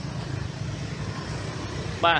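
Steady low hum of motorbike traffic passing on a road bridge.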